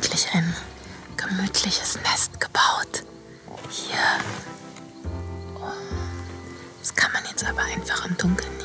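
A person whispering in short phrases over soft background music; a low bass note comes in about five seconds in.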